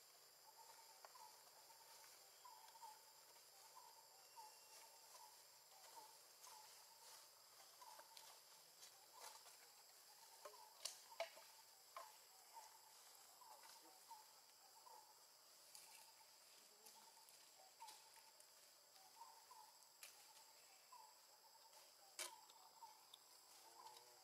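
Faint outdoor ambience: a steady high-pitched drone, a short chirp repeating about once a second, and scattered light ticks and taps, the loudest a little before the middle.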